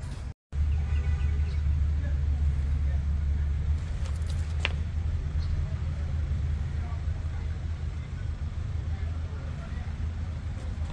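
A steady low rumble of outdoor background noise. It cuts out completely for a moment just after the start, and there is a single sharp click a little before the middle.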